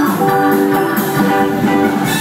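A live rock band playing at full volume, guitar to the fore, recorded from the audience.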